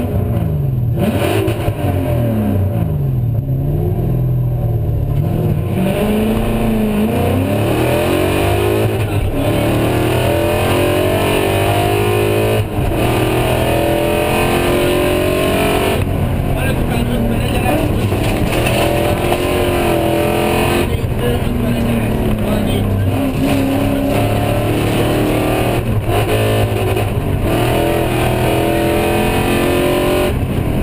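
Rally-prepared BMW E36's V8 engine heard from inside the cockpit, accelerating hard. Its pitch climbs and drops repeatedly as it shifts through the gears, then it runs at high revs with constant rise and fall.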